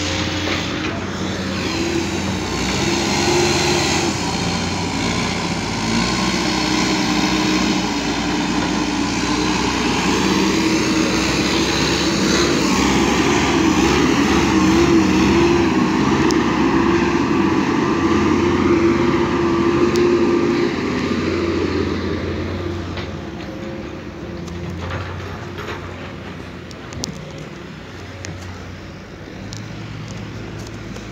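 Heavy machinery engine running steadily, likely that of the backhoe loader on site, its pitch wavering slightly. It grows to its loudest midway and fades away after about twenty-two seconds.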